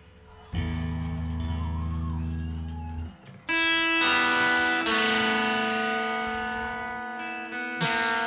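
Electric guitar holding sustained notes through effects after the song's final crash has died away: a low held note for a couple of seconds, a brief break, then higher ringing notes held to the end.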